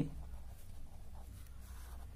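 Pen scratching faintly on paper as a word is handwritten, over a low steady hum.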